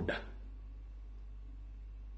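A man's voice breaks off just after the start, leaving a pause filled only by a steady low hum.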